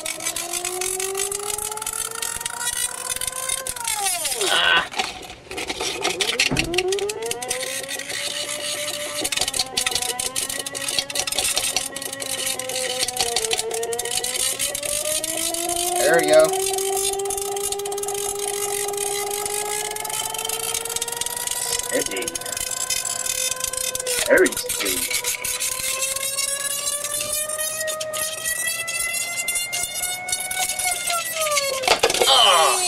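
Rodin-coil double-pulse motor whining steadily while its levitating sphere magnet spins, the pitch following the rotor's speed. The pitch dips sharply twice early on and recovers, then holds and climbs slowly near the end, with a few sharp clicks along the way.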